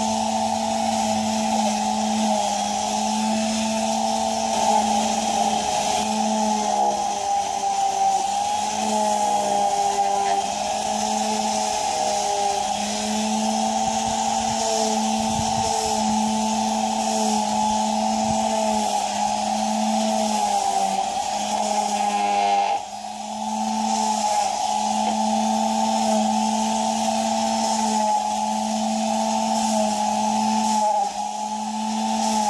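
Corded electric mouse sander running steadily with a whine whose pitch wavers as it is pressed against a painted wood sign, sanding through the paint to distress it. The sound dips briefly about three-quarters of the way through, then carries on.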